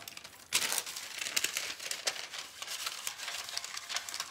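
A sheet of decoupage paper rustling and crinkling as it is handled and folded, in small irregular crackles, with a louder rustle about half a second in.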